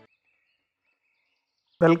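Intro music cuts off at once, leaving near silence until a man's voice begins near the end.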